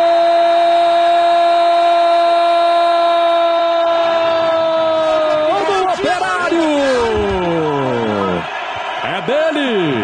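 A TV football commentator's drawn-out Brazilian goal shout, "Gol!", held on one high note for about six seconds. The voice then slides downward in several falling swoops, and ordinary calling resumes near the end.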